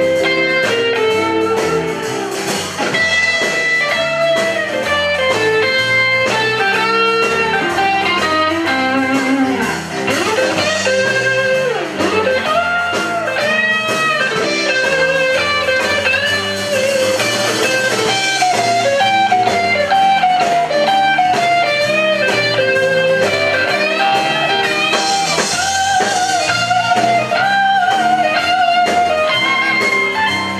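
Live blues band playing an instrumental break between verses: electric lead guitar with bent notes over the band.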